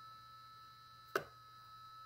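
A single short, sharp snap about a second in: a Malectrics DIY Arduino spot welder firing one pulse through its hand probes into a 0.2 mm nickel strip on a battery pack. A faint steady high tone runs underneath.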